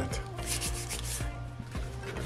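Hand brushing and rubbing across a sheet of drawing paper on a clipboard: a short run of soft, scratchy rustles about half a second to a second in.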